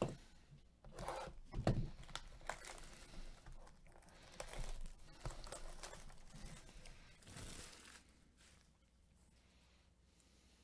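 Plastic shrink wrap being torn and crinkled off a sealed trading-card hobby box, with small knocks of the cardboard box being handled. It goes on in irregular crackly spurts and stops about eight seconds in.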